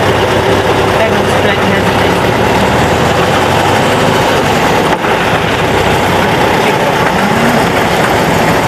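Car engine and road noise heard from inside a moving car, loud and steady.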